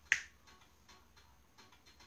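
A single sharp click, possibly a finger snap, about a tenth of a second in, followed by a few faint soft ticks.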